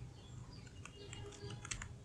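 Faint clicks of a computer keyboard as several keys are typed in quick succession.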